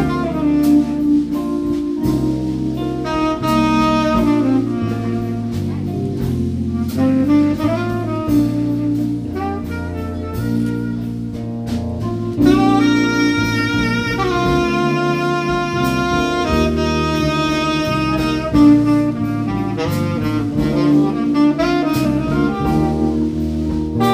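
A live jazz band plays, with a saxophone carrying the melody over electric bass and a drum kit keeping time.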